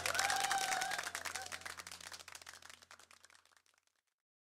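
Group clapping with a faint voice over it, fading out to silence about three and a half seconds in.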